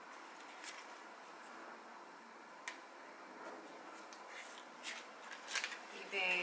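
Faint rustling of paper cards and a paper tag envelope being handled, with a few light, sharp clicks.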